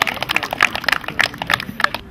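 Scattered applause from a small crowd, the separate hand claps easy to pick out, dying away just before the end.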